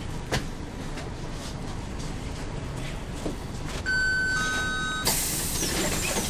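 Inside a Volvo B10MA articulated bus with its diesel engine running: a click shortly after the start. About four seconds in comes an electronic door warning beep of two overlapping steady tones, lasting about a second. It cuts off into a loud hiss of compressed air as the pneumatic doors work.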